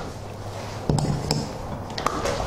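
Clicks and knocks from the door of a large egg hatcher cabinet being pushed shut and its handle latched, a few sharp clicks about a second in and one near the end, over a low steady hum.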